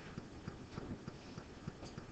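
A quiet pause with faint room tone and soft, irregular little clicks, several a second.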